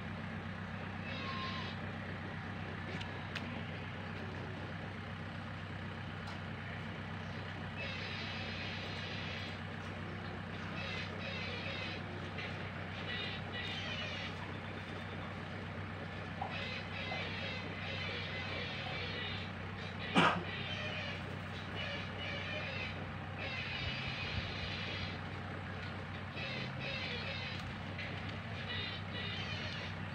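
A steady low engine hum runs throughout, with spells of high chirping that come and go. About twenty seconds in, one short, loud sound drops quickly from high to low pitch.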